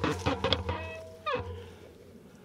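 Mountain bike clattering over the trail and braking to a stop: a few sharp knocks, then a brief squeal from the brakes about halfway through that falls away, after which the riding noise stops.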